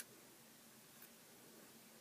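Near silence: room tone, with a faint tick at the start and another about a second in.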